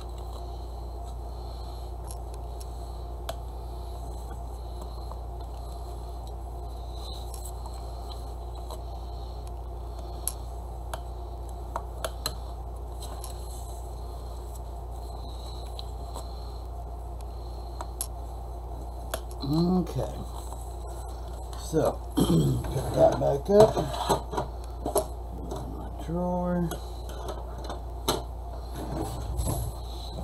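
Steady low background hum with a few faint, scattered taps and clicks of paper being scored on a plastic scoring board. From about two-thirds of the way in, a person's voice murmurs in short indistinct bursts.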